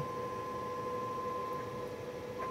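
Steady audio test tone of about 1 kHz, with a fainter lower tone, over a background hiss: the tone that is amplitude-modulating a CB radio's carrier on the test bench. The tone cuts out near the end, when the radio is left sending a bare, unmodulated carrier.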